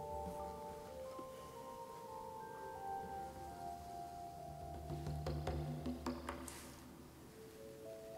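Quiet background music of sustained, bell-like mallet notes moving from pitch to pitch, with a few faint clicks about five to six seconds in.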